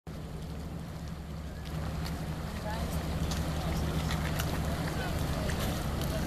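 A boat engine drones steadily, growing louder about two seconds in, with people talking and wind on the microphone.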